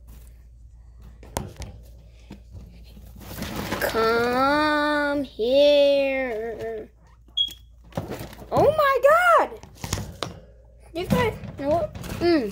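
A person's voice holding two long, wordless, steady notes in the middle, like humming or a drawn-out call, followed by shorter rising-and-falling vocal sounds near the end, with a few light knocks in between.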